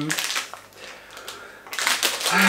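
Plastic sweets bag crinkling as it is handled, a short rustle at the start and a louder one near the end.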